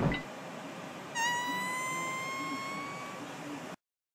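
A long, high, squeaky fart sound, one drawn-out note that rises slightly in pitch over about two seconds, starting about a second in, over faint hiss; the audio then cuts off abruptly.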